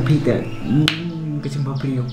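A man's finger snap, one sharp crack about a second in, over his own voice and background music.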